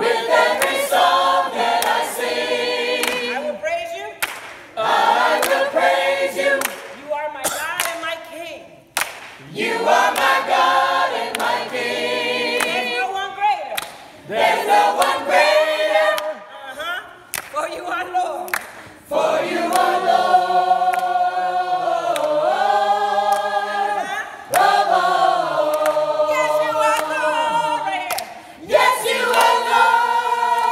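Gospel choir singing a cappella, several voices in harmony, in phrases broken by short pauses, with long held chords in the second half.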